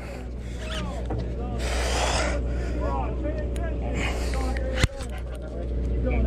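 Sportfishing boat's engine running with a steady low drone under distant voices of other anglers. There is a short rush of noise about two seconds in and a sharp click a little before the end.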